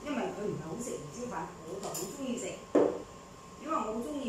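Talking throughout, with one short, sharp knock about three quarters of the way through.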